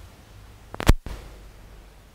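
A single sharp click about a second in, as a metal dissecting needle is laid down on a plastic tray, followed by a brief moment of dead quiet.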